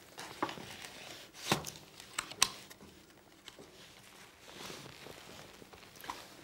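A few sharp clicks and knocks of a revolver and small metal items being handled on a wooden tabletop, the loudest two about a second apart early on, then quieter handling.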